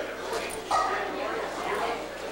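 Indistinct chatter of people's voices, with a short, higher-pitched call a little under a second in.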